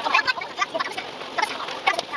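Bus cabin sound played back at four times speed: voices sped up into rapid, high chattering, like clucking, over a steady hiss of running noise.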